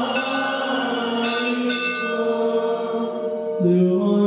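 Small liturgical bells jingling in a few short shakes over sung chant held on long, steady notes. Near the end the chant moves to a new, lower phrase.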